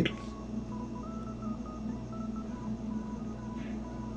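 Quiet background music: a simple melody of short, clean electronic notes stepping between a few pitches over a low, steady hum.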